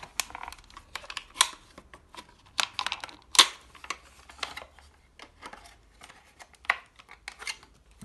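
Hard plastic parts of a Dyson V8/V10 motorised brush head clicking, knocking and scraping in the hands as a housing part is worked loose to unclip and slide out. The clicks come irregularly throughout, the sharpest about three and a half seconds in.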